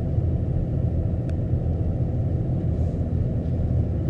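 Car road noise heard from inside the cabin while driving: a steady low rumble of engine and tyres.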